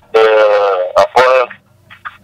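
Speech only: a man's voice over a conference-call telephone line.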